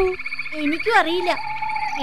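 A steady, rapidly pulsing chorus of frogs croaking as night-time background, with a child's voice speaking over it.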